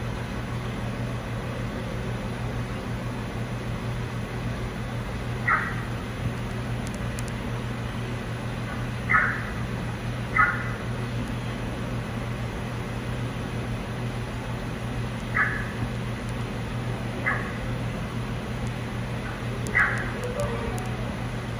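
Steady low machine hum in an aquarium viewing hall, broken by six short high-pitched sounds spaced irregularly through it.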